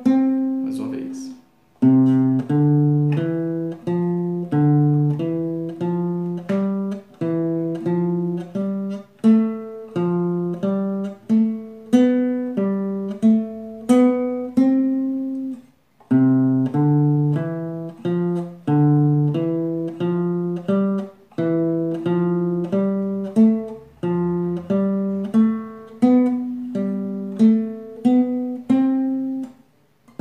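Nylon-string classical guitar played slowly in single plucked notes: the C major scale in a four-note pattern, each group of four climbing from the next note of the scale. The run stops briefly about two seconds in and again about halfway, then starts over from the bottom.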